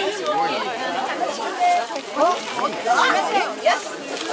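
Several people talking over one another at once: busy, overlapping chatter with no clear words.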